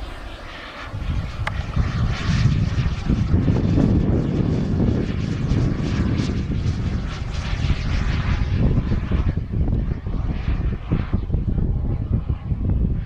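Small model jet turbine of a radio-controlled King Cat sport jet flying overhead: a steady jet roar and hiss that swells about a second in and stays loud.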